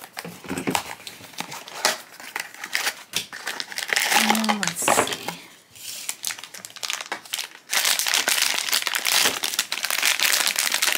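Scattered clicks and rustles of a cardboard blind box being opened, then a foil blind-box bag crinkling as it is handled and worked open, dense and continuous for the last couple of seconds.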